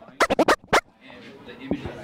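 A short transition stinger between segments: a rapid run of sharp, scratchy strokes packed into about half a second, then quiet music building up toward the end.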